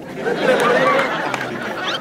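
Live audience laughing and chattering together in a hall.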